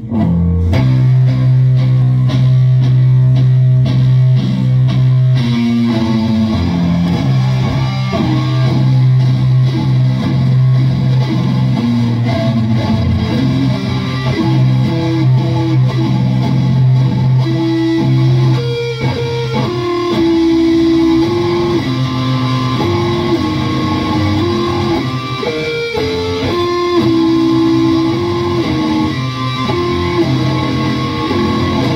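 A band playing slow doom metal led by electric guitar. It opens on one low note held for about five seconds, then moves into a slow riff of long notes, with a higher note repeating over it in the second half.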